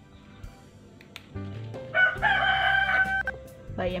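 A rooster crowing once, about two seconds in, over faint background music.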